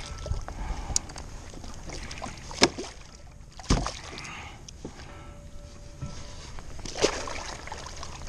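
A large bluefish thrashing and splashing at the surface beside a plastic kayak, with a few sharp knocks about two and a half, three and a half and seven seconds in.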